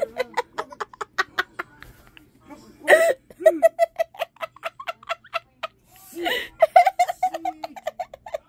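A person giggling in long runs of quick, high laughs, with gasping breaths in between.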